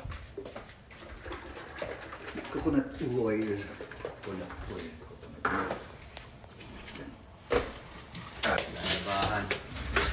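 Indistinct talking in a small kitchen, with a couple of sharp knocks about halfway through.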